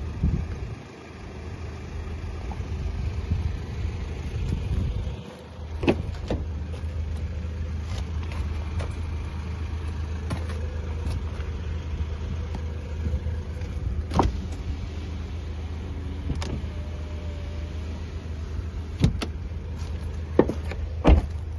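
A steady low hum throughout, with several sharp clicks and knocks as the car's doors are opened and handled, the clearest about six seconds in and near the end. Rumbling gusts, like wind on the microphone, during the first five seconds.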